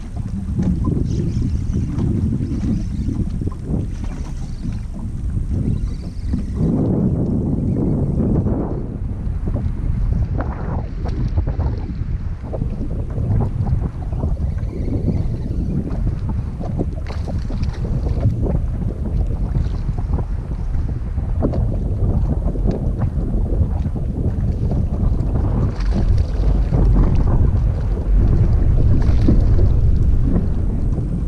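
Wind buffeting the camera microphone: a loud, steady low rumble that flutters with the gusts, swelling about seven seconds in and again near the end.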